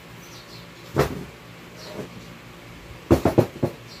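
Knocks and clatter of hard objects being handled and set down: one sharp knock about a second in, a softer one a second later, then a quick run of four or five louder knocks near the end.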